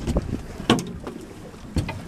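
Wind buffeting the microphone over water lapping against the side of a boat, with a few short sharp knocks.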